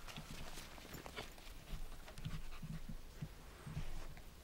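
A dog panting, its breaths coming about two a second in the second half, with scattered light steps on dirt.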